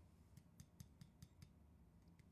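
Near silence broken by a short run of faint, sharp clicks, about six in just over a second.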